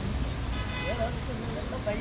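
Voices talking over a steady low rumble of street traffic, with a brief high toot about half a second in.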